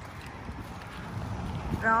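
Footsteps of people walking on a concrete sidewalk, over a low outdoor rumble. A voice speaks near the end.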